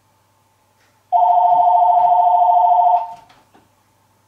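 Electronic telephone ringer sounding one ring of about two seconds, a rapid warble between two tones, starting about a second in. A light click follows near the end.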